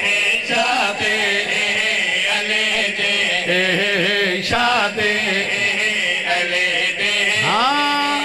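A group of men chanting a devotional qasida together into microphones, their amplified voices carrying long, wavering held notes. Near the end the voices slide up into one long sustained note.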